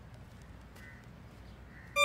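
Quiet low background rumble of outdoor ambience, with a faint short high tone about a second in.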